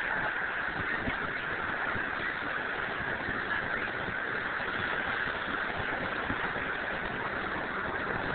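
Steady outdoor rushing noise with no distinct events, holding an even level throughout.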